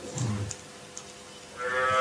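A man's short low hum early on, then a pause, then a drawn-out voiced sound swelling near the end as he breaks into a laugh.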